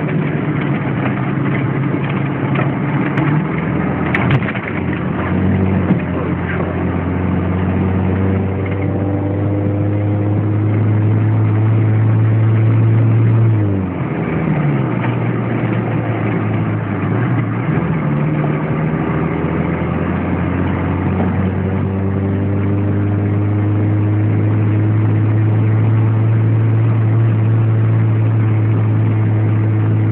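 Mercedes-Benz G-Class Wolf's engine heard from inside the cab while driving a dirt track: the note climbs slowly in pitch, drops off sharply about fourteen seconds in as it changes gear, dips once more a few seconds later, then pulls up again and holds steady. A few short knocks come about four seconds in.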